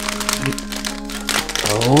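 Foil blind-bag packet crinkling as it is torn open by hand, over steady background music.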